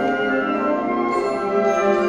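A concert band of woodwinds and brass playing full, sustained chords that change about half a second in and again near the end.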